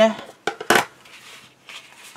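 Stiff cardstock being handled on a tabletop: a couple of light clicks, then one louder sharp tap about three-quarters of a second in as the card is pressed and set against the table.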